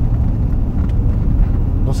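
Steady low road and engine rumble heard inside the cabin of a moving passenger vehicle.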